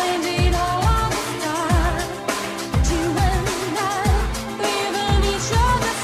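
Disco-style pop song from a DJ mix: a singing voice with wavering held notes over a steady kick-drum beat of roughly two thumps a second and full instrumental backing.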